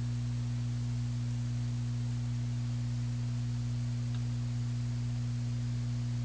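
Steady electrical mains hum from bench electronics: a low, unchanging drone with a fainter tone above it, and a faint click about four seconds in.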